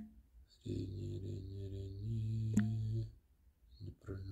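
A low, drawn-out voice-like sound lasting about two and a half seconds, stepping up in pitch partway through, with a sharp click at the start and another near the end.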